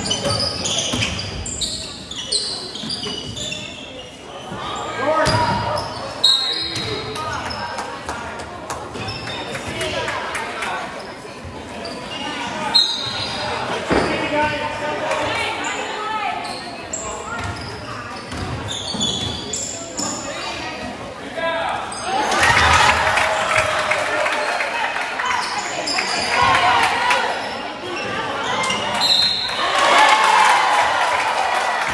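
Basketball being dribbled and bouncing on a hardwood gym floor, with players and spectators calling out in a large, echoing gym. The voices swell into crowd shouting and cheering in the last third, around a made three-point basket.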